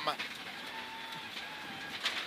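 Steady in-car noise of a Mitsubishi Lancer Evolution X rally car at speed on a gravel stage: an even hiss of engine, tyre and gravel noise, with a faint held tone about a second in.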